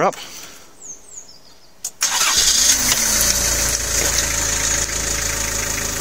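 1996 Nissan Largo's 2.0-litre four-cylinder diesel engine starting about two seconds in, then settling into a steady idle.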